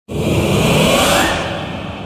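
Cinematic whoosh sound effect for an animated title: a noisy sweep that starts suddenly, rises in pitch and swells over the first second, then fades into a long lingering tail.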